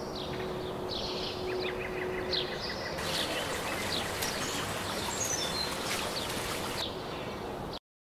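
Birds chirping repeatedly, with a short trill, over a steady outdoor background hiss. A faint steady hum runs under the first couple of seconds. The sound cuts out to silence just before the end.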